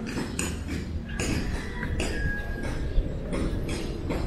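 Irregular sharp metallic clinks and knocks, like hammering, about two a second, over a steady low rumble; a brief high tone sounds about two seconds in and the loudest knock comes about three seconds in.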